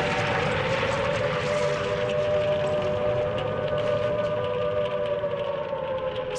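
Air-raid siren sounding one long, nearly level wail that sways slightly in pitch, over a rough hiss.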